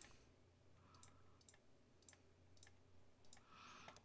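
Near silence, with several faint computer mouse clicks spread through it.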